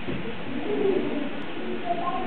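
An indistinct person's voice, low and drawn out, over a steady background hiss.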